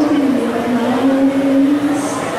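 A young woman singing into a handheld microphone, holding one long note that slides down in pitch about half a second in and then holds steady.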